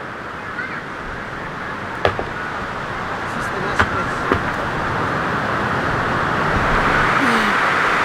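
Steady rushing outdoor noise of wind and ocean surf, slowly growing louder, with a few light knocks.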